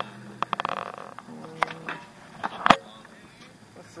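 Several sharp knocks and clacks, the loudest about two-thirds of the way in, with faint voices in between.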